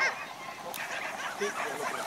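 Several spectators shouting and yelling at once, cheering on racing greyhounds, in overlapping calls with no break.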